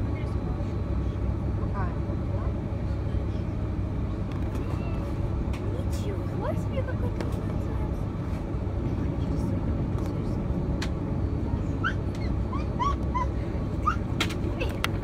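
Airbus A330-223's Pratt & Whitney engines running at low ground power, heard inside the cabin as a steady low rumble. Faint short high chirps come through over it, several of them near the end, along with a few light clicks.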